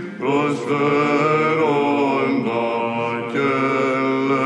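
Byzantine chant sung by Athonite monks in plagal fourth mode: the melody moves over a steady held drone (ison), with a brief breath pause just after the start.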